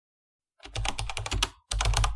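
Computer keyboard typing sound effect: two quick runs of rapid key clicks, the first starting a little over half a second in and the second, shorter, following after a brief pause.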